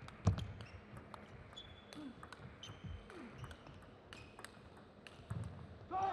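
Table tennis rally: the celluloid ball clicking irregularly off rackets and table, the loudest knock a moment in. Right at the end a player shouts as he wins the point.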